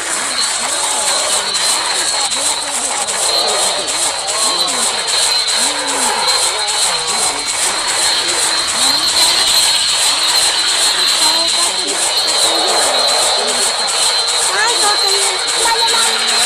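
Loud, densely layered and distorted cartoon soundtrack, with several warbling, pitch-bent voices over a harsh hiss and a steady high whine.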